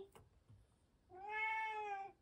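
A tabby cat meowing once: a single drawn-out call of about a second, starting about a second in. The owner says the cat cries a lot and is angry after she has been out.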